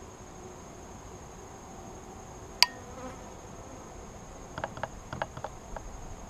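Honeybees around open hives, with one sharp click about halfway through and a quick run of light clicks and knocks near the end from hive equipment being handled.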